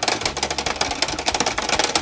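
Rapid plastic clicking and clattering, more than ten clicks a second, as a plastic ball-maze game with a metal ball is worked hard by hand.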